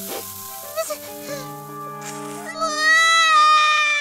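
Cartoon baby crying: one long wail starting about two and a half seconds in, falling away at the end, over soft background music with held notes.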